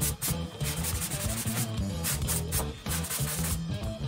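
Sandpaper being rubbed over a freshly plastered wall in irregular scraping strokes, smoothing the surface, with background music under it.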